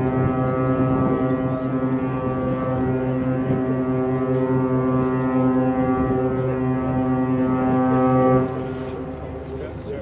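A cruise ship's horn sounding one long, steady deep blast that cuts off sharply about eight and a half seconds in. It is part of a horn salute exchanged between two passing cruise ships.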